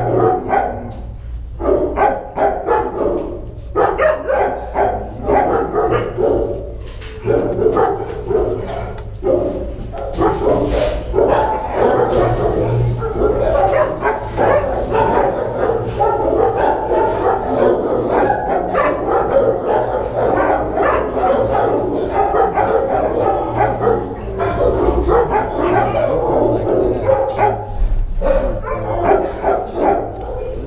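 Dogs barking in a shelter kennel block, barks overlapping almost without a break, over a low steady hum.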